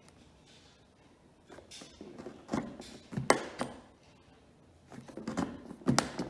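A wooden-handled poking tool punched through a paper template into a cardboard box. It makes a handful of sharp pokes at irregular intervals, the loudest just after three seconds in.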